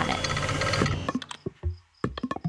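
Produced transition sound: a hissing wash that dies away about a second in, then a few soft percussive knocks and a low thump.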